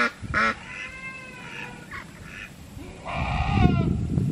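Domestic ducks quacking: a few short quacks, a longer drawn-out call, then a louder burst of calls near the end.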